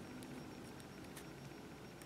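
Faint, light ticks of a small plastic toy machete being worked down into a plastic leg holster, over low room hum.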